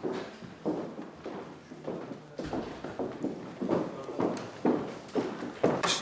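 Footsteps of hard-soled shoes on a hard floor, a brisk walking pace of about two steps a second.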